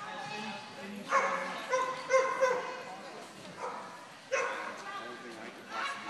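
A dog barking and yipping in short, sharp barks: a quick run of them in the first half and another about four seconds in, with voices underneath.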